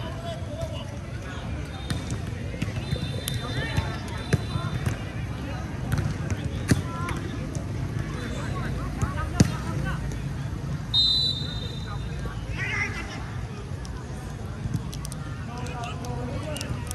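Football match sound: players and onlookers calling and talking, with several sharp thuds of the ball being kicked, the loudest about halfway through. A short high tone sounds twice.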